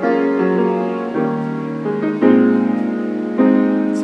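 Piano played live: slow, sustained chords, with a new chord struck roughly every second and the notes left ringing.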